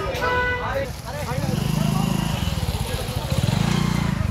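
A motorcycle engine running close by, its low throb growing louder twice, once about a second and a half in and again near the end, under the voices of a crowd.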